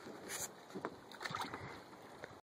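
Faint splashing and sloshing of water as hands work in a bucket of water, with a few short splashes and a brief hiss about a third of a second in.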